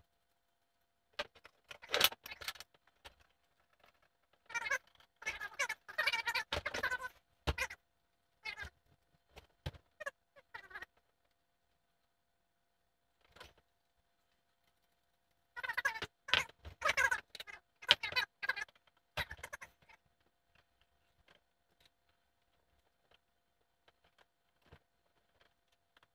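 Handling noise from fitting a camera mount onto the scope of a Ruger 10/22 rifle: clicks, rattles and rustles in three spells, the first short and near the start, the second in the first third, the third about two-thirds through, with only scattered light clicks in between.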